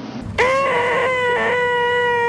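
A cartoon wrestler's loud yell: one long note that starts about half a second in, swoops up briefly, then holds at a steady pitch.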